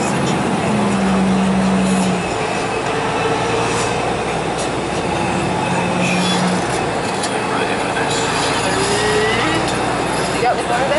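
Cabin noise inside a moving bus: steady engine and road noise, with a low hum that drops away about two seconds in and comes back briefly near the middle.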